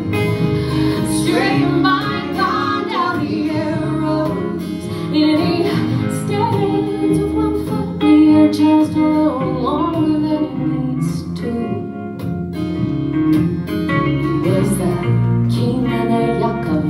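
Live country band playing a passage between sung lines: electric guitar, acoustic guitar and upright bass.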